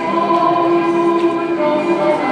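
Folk dance music with a group of voices singing long held notes together.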